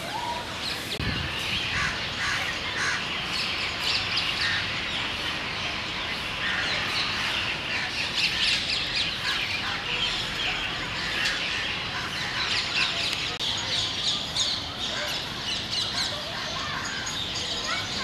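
Outdoor ambience of many birds calling and chirping continuously, a steady busy chatter.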